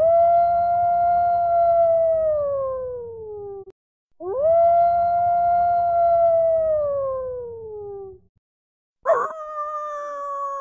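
Recorded dog howling: two long howls of nearly four seconds each, each rising quickly, holding steady, then sliding slowly down in pitch, over a low hum. A brighter, higher howl starts suddenly near the end.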